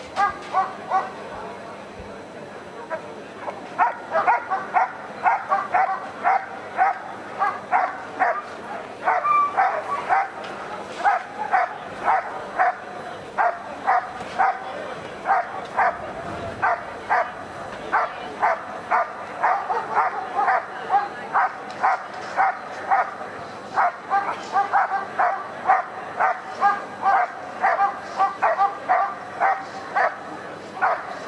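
German Shepherd barking steadily at about two barks a second, in a sustained bark-and-hold at the helper's hiding blind in a protection routine. The dog has found the helper and is guarding him in place.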